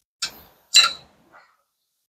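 Short metallic clicks of a thin steel pick knocking against the rear brake caliper and pads: a light click just after the start, a louder, briefly ringing one a little under a second in, and a faint tick about halfway through.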